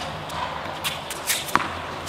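A tennis ball struck with a racket on a hard court, a single sharp pop about one and a half seconds in, preceded by a few lighter, quieter sounds.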